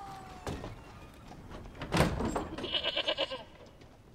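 A sharp thump about two seconds in, then a single quavering bleat from a goat or sheep about a second later.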